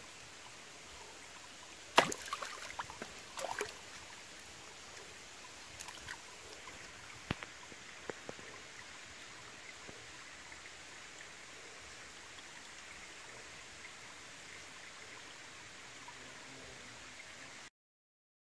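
Creek water trickling steadily, with a sharp knock from a hand-held rock striking stone about two seconds in and a short run of smaller knocks after it. Two more single knocks come around seven and eight seconds, and the sound cuts out just before the end.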